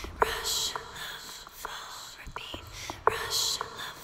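Whispering, with two long breathy bursts about three seconds apart, among scattered sharp clicks.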